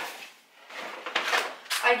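Groceries being put away in a kitchen: a sharp knock at the start, then about half a second of rustling and handling noise from a paper grocery bag.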